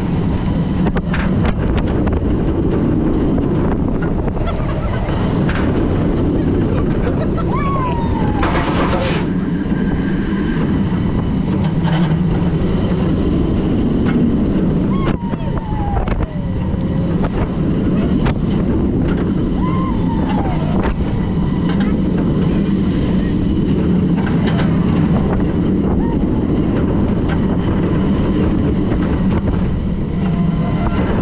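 Bolliger & Mabillard hyper coaster train running its course at speed: a steady roar of wheels on steel track mixed with wind blasting the microphone. A few brief falling shouts from riders cut through about a quarter, half and two-thirds of the way in.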